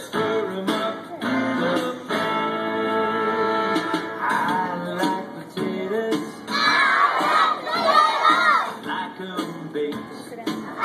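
A group of young children singing a children's song along with a recorded guitar backing track from a portable CD player; the singing is loudest for a few seconds past the middle.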